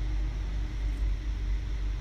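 Steady low-pitched hum with a faint hiss, the background noise of the lecture recording, with no other event standing out.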